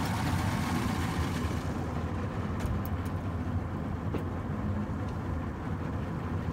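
Two Yamaha V6 200 fuel-injected two-stroke outboard motors idling steadily. The port motor, freshly rebuilt after a worn connecting rod bearing, runs with no knocking.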